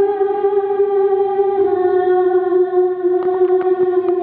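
A single long note held on an accordion, steady with a slight drop in pitch about a second and a half in, with a few light clicks near the end.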